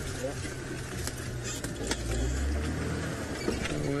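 Off-road safari vehicle's engine running under load as it pushes through bush, louder about halfway through, with scattered knocks and scrapes from branches and the vehicle body.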